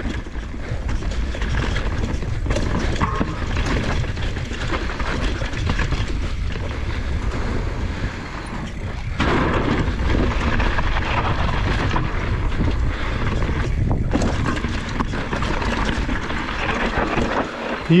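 Mountain bike riding fast down a dirt trail: a steady rush of wind on the microphone and tyre noise over dirt, with frequent knocks and rattles as the bike hits bumps and rocks.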